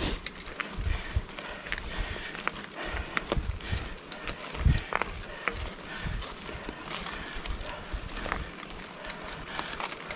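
Mountain bikes climbing over hexagonal concrete pavers: irregular knocks, clicks and rattles from the bike, with occasional low thumps.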